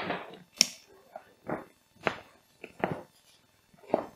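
Plastic side-release buckle of a waterproof roll-top backpack being clicked, with a sharp click about half a second in. Several softer rustles and knocks from the bag's stiff waterproof material being handled as the top is fastened.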